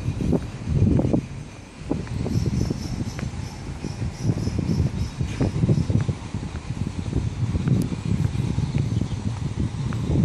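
Outdoor ambience made up of an uneven low rumble that rises and falls without a rhythm, with faint, thin, high insect chirring above it.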